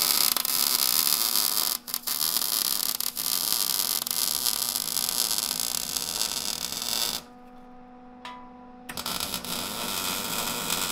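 Wire-feed welder arc crackling steadily as steel tubing is tack-welded. It breaks off briefly about two and three seconds in, then stops for about a second and a half around seven seconds in before starting again.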